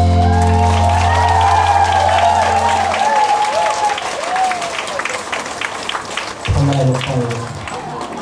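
A live band holds its final chord, which cuts off about three seconds in, while the audience applauds and cheers over it. The applause and cheering carry on after the band stops and fade toward the end, with a short low note sounding briefly near the end.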